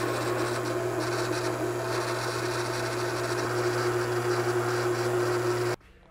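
Benchtop drill press running and drilling a 3/8-inch hole through a metal brake pedal part, the bit following a pilot hole. It gives a steady motor hum with cutting noise that stops suddenly just before the end.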